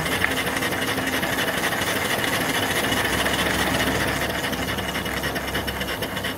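Small steam engine running steadily on live steam from its boiler: a fast, even mechanical clatter with a hiss of steam.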